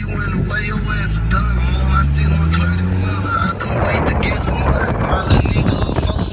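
Polaris Slingshot's engine accelerating, its pitch rising steadily for about three and a half seconds, then a rush of wind noise takes over, with music playing along.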